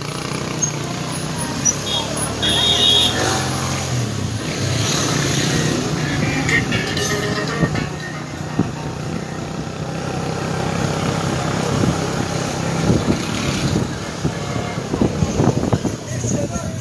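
A vehicle engine runs steadily through street noise, with voices talking throughout and a few sharp clicks and knocks.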